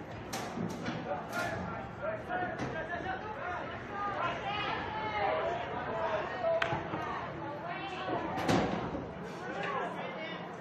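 Indistinct voices at a soccer match, several people talking and calling at once without any clear words, with a few sharp thuds, the loudest about eight and a half seconds in.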